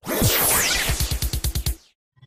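Intro sound-effect whoosh with a falling sweep, followed by a fast even run of low thuds that fades and cuts off just before the end.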